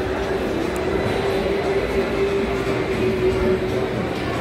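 Steady low rumbling background noise of an indoor public space, with a held steady tone through most of it that stops near the end.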